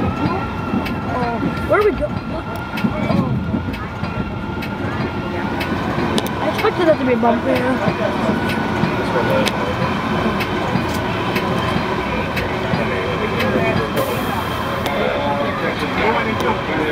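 Metra commuter train heard from inside its cab car while rolling along the track: a steady running rumble with a level high whine and scattered sharp clicks from the wheels and rails, with indistinct voices in the background.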